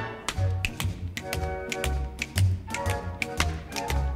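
A theatre orchestra plays a dance break while a tap dancer's steps click sharply over it in quick, irregular runs.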